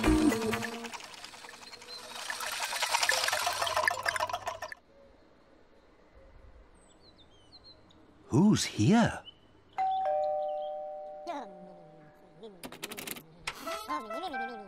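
Children's TV sound effects: a rattling hiss that cuts off about five seconds in, a few faint bird chirps, then two short rising-and-falling voice-like calls. After them comes a two-note doorbell-like chime that rings and slowly fades.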